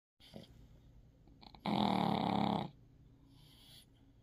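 A sleeping Boston terrier snoring: one loud snore about a second long near the middle, between quieter breaths, with a soft hissing breath near the end.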